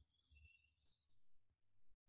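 Near silence, with faint high chirps of distant birds.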